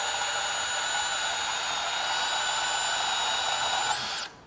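DeWalt DCS377 Atomic 20V brushless compact band saw running steadily as its blade cuts through threaded rod (all-thread), with a steady high-pitched motor whine.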